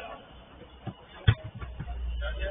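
A football kicked once, a sharp thud a little past a second in, with a few lighter knocks and players' voices around it.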